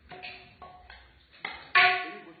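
Tableware clinking: four or five sharp knocks that each ring briefly at the same pitch, the loudest near the end.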